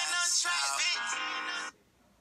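A hip-hop song with auto-tuned vocals is playing back, then stops abruptly near the end as it is skipped.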